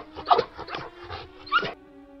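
About four short, high, whimpering animal-like cries in quick succession, a cartoon voice effect for the little clay creature, the last one rising in pitch. Soft held music tones come in near the end.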